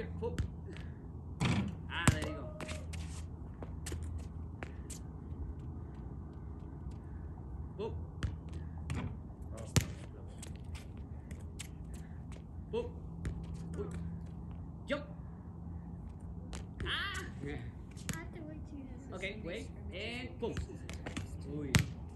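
Soccer ball being kicked and bouncing on concrete: a series of sharp thumps at uneven intervals, the loudest about two, ten and twenty-two seconds in.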